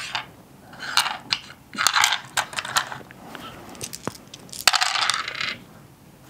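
Plastic six-sided dice clicking as they are gathered up from a wooden dice tray, then rolled into the tray with a clattering rattle near the end.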